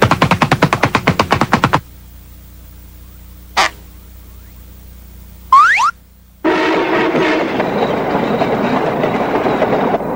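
Cartoon sound effects: a fast run of clicks, about a dozen a second, lasting nearly two seconds, a single click later, then a quick rising whistle, followed from about six and a half seconds in by busy music.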